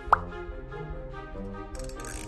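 A short rising 'pop' sound effect, a quick upward glide, just after the start, over soft background music with steady sustained notes.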